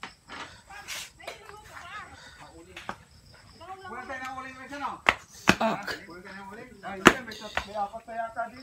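People talking in the background, with three sharp knocks in the second half, the loudest near the end.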